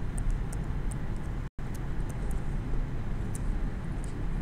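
Steady low rumble of room noise with scattered light ticks of a stylus tapping on a tablet screen while writing. The sound cuts out completely for a split second about a second and a half in.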